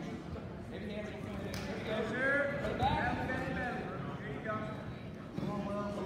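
People shouting from the sidelines in a gymnasium, loud, unclear yells in a few bursts, the loudest about two to three seconds in and again near the end, with the hall's echo around them.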